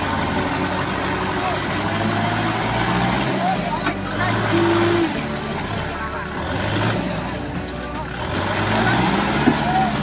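Farm tractor engine running hard under load, its pitch rising and falling as the rear wheels spin and churn in deep paddy mud, with people calling out over it.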